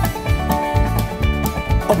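Country band music, instrumental between sung lines: plucked string instruments over a steady bass beat.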